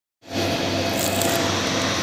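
Steady whir and hiss of a running motor-driven grinding machine (pulverizer) with a low hum, cutting in just after the start.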